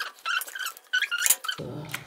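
A plastic transparency sheet squeaking in several short, high chirps with light clicks as it is slid and lifted against the print.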